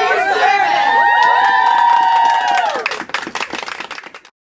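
A small group cheering together, many voices holding one long shout, then breaking into clapping about three seconds in.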